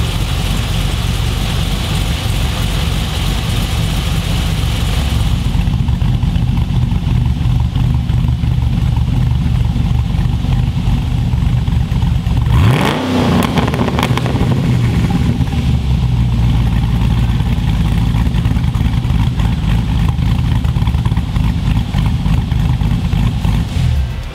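GM LS V8 fitted with a VCM21 camshaft, idling through the exhaust with a noticeable, lumpy cammed idle, blipped once in a quick rev that rises and falls about halfway through.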